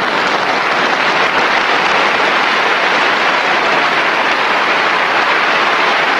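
Large audience applauding steadily, a dense even clatter of many hands clapping.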